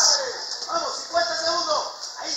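Speech only: a voice talking indistinctly, over a steady hiss.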